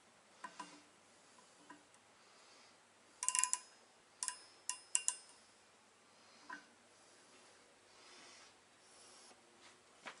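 Small sharp metallic clicks of an outside micrometer being closed onto an RB25DET crankshaft main journal. There is a quick run of clicks with a light ring about three seconds in, then three single clicks over the next two seconds and a softer knock later.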